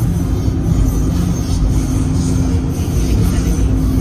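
Steady rumble inside a car's cabin, with a steady low hum held through most of it.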